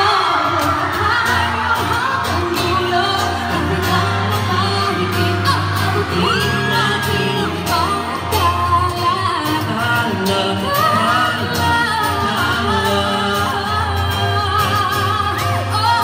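A woman singing live into a microphone over amplified pop backing music with a steady beat and bass, holding one long note about six seconds in.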